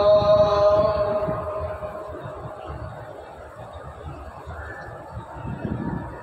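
A muezzin's call to prayer (adhan) over loudspeakers: a long held sung note ends a line about a second in and dies away in echo, leaving a quieter stretch of low background noise before the next line.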